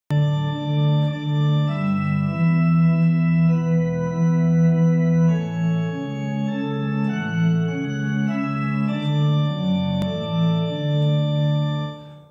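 Organ playing a slow hymn introduction in sustained chords, dying away at the very end.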